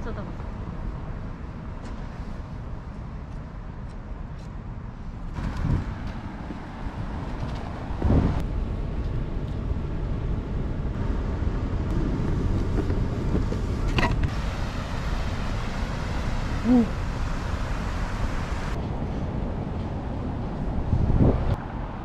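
Outdoor street ambience: steady road-traffic noise, swelling in the middle as a car passes, with a few brief knocks.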